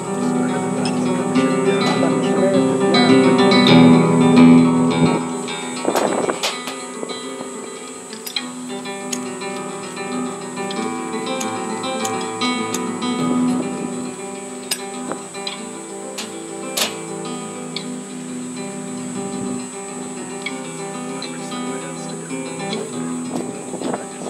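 Solo classical guitar playing a slow piece of plucked notes, fuller and louder in the first few seconds, then softer and sparser.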